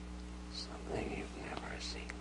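Soft whispered speech, a few indistinct words from about half a second in, with hissy 's' sounds, over a steady low electrical hum.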